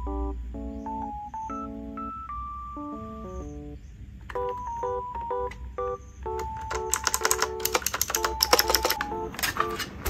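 Background music with a gentle stepping melody. Past the halfway point, sharp clicks from a pink Basaltech X9 mechanical keyboard with round typewriter-style keycaps come in over it and grow quick and dense near the end.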